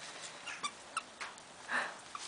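A Newfoundland dog chewing and tearing gift-wrapping paper: short papery crackles and a louder rustle near the end. A brief high squeak comes about half a second in, and a fainter one about a second in.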